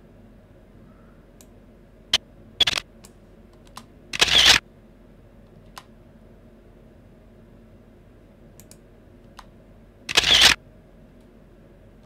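Camera shutter sound effect played back twice, each a loud half-second snap, about four seconds in and again about ten seconds in. A few short, quieter clicks come in between.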